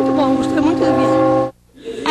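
Church bells ringing, a set of steady sustained tones under a woman's voice, cut off abruptly about one and a half seconds in.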